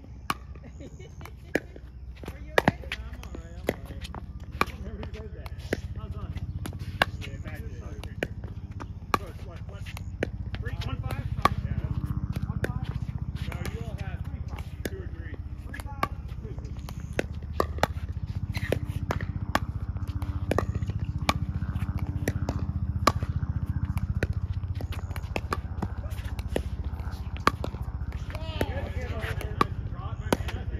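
Pickleball paddles hitting a plastic ball in a fast volley exchange, a steady run of sharp pops about one to two a second, with fainter pops mixed in.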